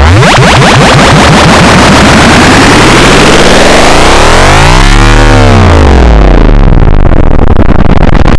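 Loud, heavily distorted audio effect whose pitch sweeps: a steep rise at the start, then a rise and fall about five seconds in.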